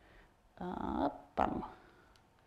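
A person's voice making two short wordless vocal sounds: the first about half a second in, rising in pitch, the second briefly after it.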